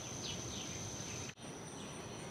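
Quiet outdoor background: a low hiss with a steady high-pitched tone and a few faint chirps. It drops out briefly at an edit a little past halfway.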